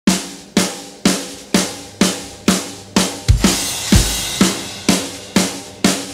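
Drum kit playing the intro of a rock song: a snare beat about twice a second, with heavy bass drum hits and cymbal wash coming in about three seconds in.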